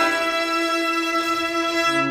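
String quartet playing sustained bowed chords, a new chord struck at the start and held, with a low string note entering near the end.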